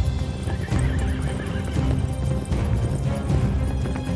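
Hoofbeats of several horses on the move, with a horse whinnying, over background score music.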